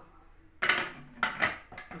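Aluminium pressure-cooker lid clanking against the pot as it is set on and locked, about four metal knocks beginning just over half a second in.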